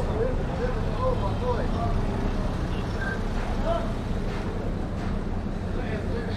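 Street ambience: a steady low rumble of a motor vehicle's engine, with people talking nearby in snatches.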